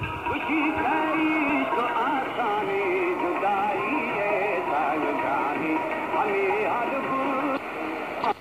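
Music with a singing voice coming from the speaker of a Tecsun PL-450 portable radio tuned to an FM station, with no treble above the low highs.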